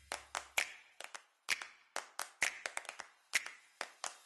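A run of about fifteen sharp hand claps in a quick, uneven rhythm, the percussion of a produced news-intro sting. A low tone dies away in the first half second.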